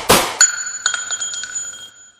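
Two sharp hits, then a steady high electronic ringing tone, several pitches held together with a few quick clicks, lasting about a second and a half before it cuts off.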